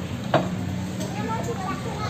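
Background voices and a steady low hum, with one sharp knock about a third of a second in.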